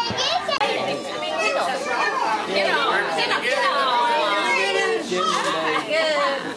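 Children's voices: several kids chattering and calling out at play, their voices overlapping.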